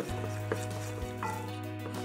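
Wooden spoon stirring a butter-and-flour roux as it browns in a cast iron pot, with a faint sizzle and a few soft scrapes. Soft background music with held notes plays over it.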